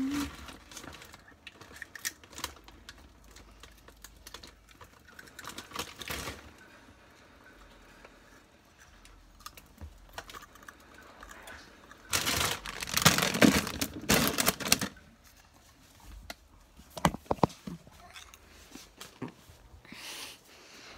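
Eating chips from a snack bag: irregular crunching and crinkling. The loudest burst of rustling comes about twelve to fifteen seconds in.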